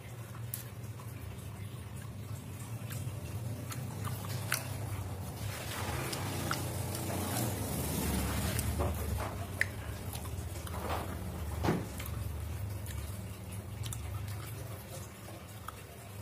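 A person chewing a mouthful of stir-fried shrimp and onion close to the microphone: soft, irregular wet mouth sounds with scattered small clicks, over a steady low hum.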